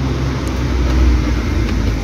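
Steady low rumble of a motor vehicle's engine in the background, with a fainter hiss over it, swelling slightly about a second in.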